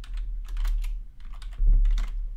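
Typing on a computer keyboard: a run of quick keystrokes over a low rumble that swells near the end.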